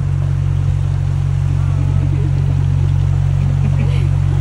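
Engine of a small river motorboat running at a steady cruising speed, an even low drone that holds without change.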